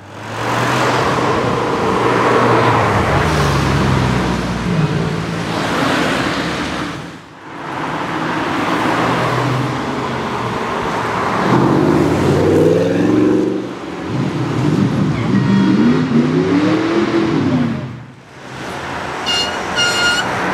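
Sports car engines accelerating past one after another, revving up and dropping back between gear changes. The highest, loudest run of revs comes in the middle of the stretch.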